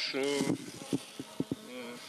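A few short sharp clicks and knocks as foil sachets and plastic bottles of tree treatment are handled, over a steady low buzz.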